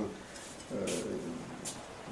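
A man's drawn-out, hesitant "euh", with a couple of faint clicks or breaths.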